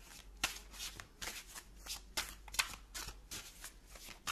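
A deck of tarot cards being shuffled by hand: a quick run of short card strokes, about four a second.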